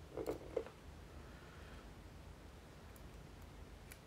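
A few light clicks of small metal lock parts being handled while pinning a lock plug: a quick cluster of clicks in the first half-second, then single faint ticks near the end.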